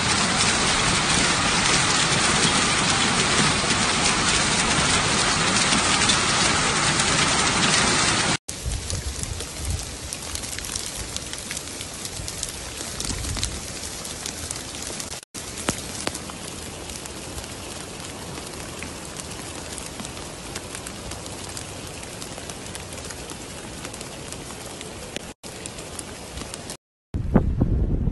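Heavy rain mixed with hail pouring down in a steady rush. It drops suddenly to a quieter, steadier downpour about eight seconds in, with brief breaks later on.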